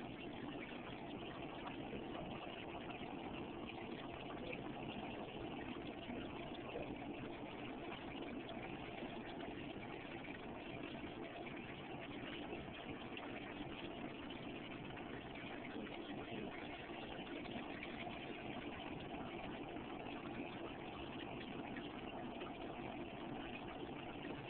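A steady mechanical hum with a constant noise underneath.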